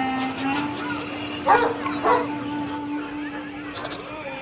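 A small dog barking twice, about half a second apart, over a steady held musical note.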